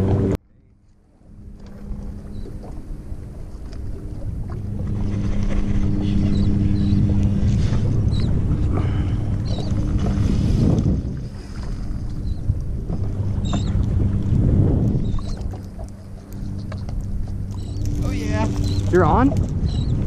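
A boat's motor humming steadily at low speed, mixed with wind and water noise. The sound drops away abruptly just after the start, then builds back up and swells twice.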